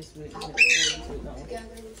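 A macaw gives one short, loud squawk about half a second in.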